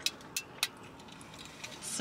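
Three faint, sharp clicks in the first second, then a short hiss near the end.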